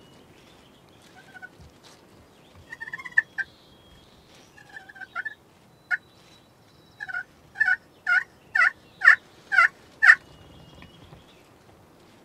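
Turkey call sounding hen-turkey yelps: a few scattered notes at first, then a run of about eight yelps, roughly two a second, that grows louder near the end.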